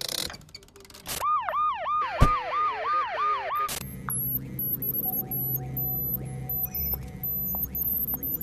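An electronic alarm siren yelping, about three quick rising-and-falling wails a second for roughly two and a half seconds. It cuts off abruptly, and a steady low hum follows.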